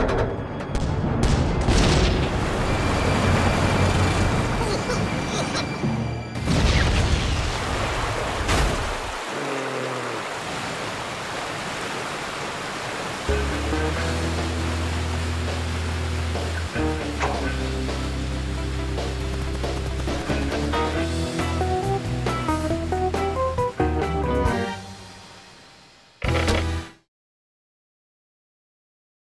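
Cartoon soundtrack: a loud rush of spraying water over music for the first several seconds, then music with a steady low bass note under a stepping melody. It fades, a short final note sounds near the end, then silence.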